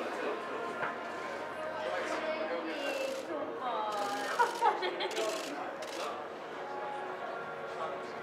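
Several people's voices talking and calling out indistinctly over background chatter, with a few short hissing noises around the middle.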